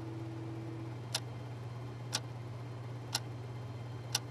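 Wall clock ticking once a second, three sharp, evenly spaced ticks over a low steady hum.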